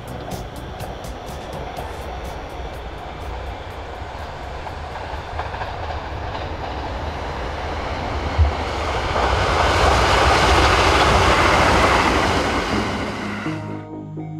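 A JR Kyushu 787 series electric train passing: a rush of wheel and rail noise that builds, is loudest about two-thirds of the way in, then fades away quickly. A brief thump comes just before the loudest part.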